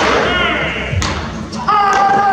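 Baseballs smacking into catchers' mitts in a bullpen, two sharp pops about a second apart, with short shouted calls from the players.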